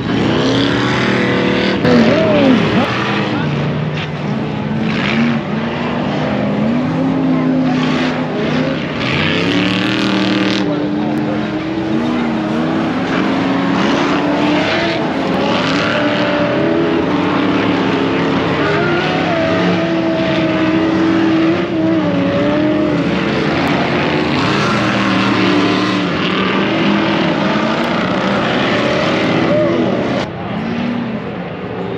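Engines of Ultra4 4400-class off-road race cars running on a dirt course, their pitch rising and falling again and again as they accelerate and back off, with voices in the background.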